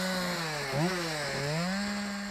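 Gas-powered chainsaw running fast, its engine note dipping twice in the middle and recovering as the bar bites into a wooden log.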